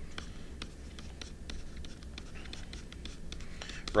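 Stylus writing on a tablet, a run of small irregular taps and scratches as letters are drawn.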